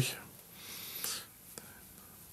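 A man's audible breath through the mouth or nose, lasting under a second, just after his speech trails off, with a faint click a little later.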